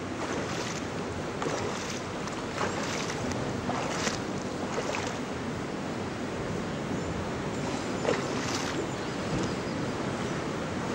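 Swimming-pool water sloshing and splashing around a swimmer moving just below the surface, with a few brief louder splashes scattered through.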